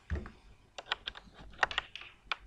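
A dull thump, then computer keyboard keys clicking in an irregular run of keystrokes.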